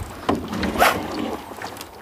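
A hooked rainbow trout being scooped into a landing net at the side of a boat: a brief splash about a second in, over low rustling and lapping water.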